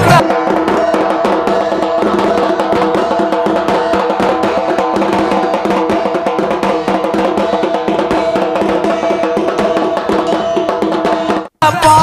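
Dhak, large barrel drums slung from the shoulder, beaten in a fast continuous rhythm with two thin sticks, alongside a stick-played side drum, with sustained ringing tones under the rapid strokes. The sound cuts off abruptly shortly before the end.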